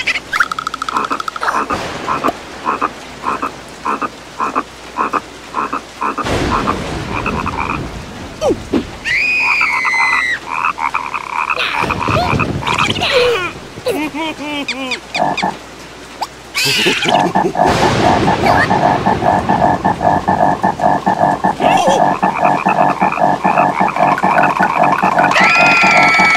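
Cartoon frog croaking in rapid pulsing trains: a choppy run in the first few seconds, then a long, steady, fast croak over the last third. Short gliding cartoon voice sounds come in between.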